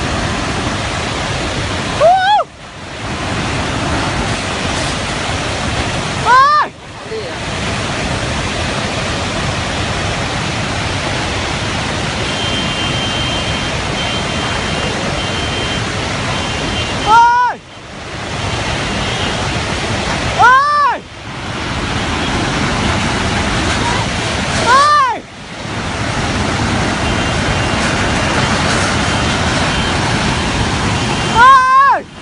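Steady loud rushing of a muddy flood torrent released by a dam collapse, with onlookers giving about five short shouts spread through it.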